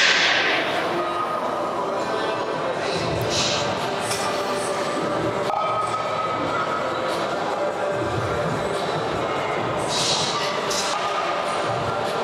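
Steady background din of a busy gym hall, with indistinct voices throughout and no single clear sound standing out.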